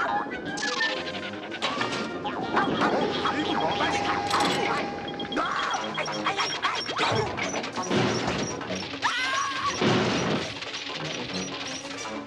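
Cartoon slapstick soundtrack: music runs under a rapid string of crashes, whacks and clatters, with a few gliding sound-effect tones.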